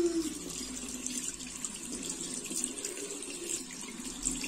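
Bathroom tap running into a washbasin, the stream splashing over a cupped hand. A brief steady tone sounds right at the start.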